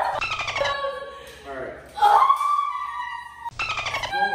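A woman's voice making drawn-out, wavering wordless cries, with short crackly bursts of noise near the start and near the end.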